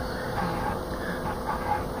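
Steady background room noise and hiss between words, with a faint steady hum and no distinct event.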